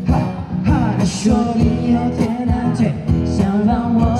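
Live busking music: acoustic guitars strummed and plucked under a voice singing into a microphone, amplified through a PA speaker, with held notes that waver in pitch.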